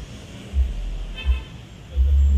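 Roadside traffic noise with dull low thumps repeating about every 0.7 seconds and a brief high-pitched note about a second in.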